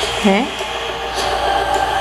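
A steady, even, hiss-like drone from a film teaser's soundtrack playing back, with a short questioning "hmm?" from a viewer just after it begins.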